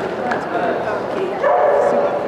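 Border collie yipping and whining, with one longer held whine near the end.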